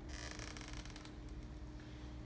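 A soft rustle in the first second, then a few faint ticks, over a steady low hum.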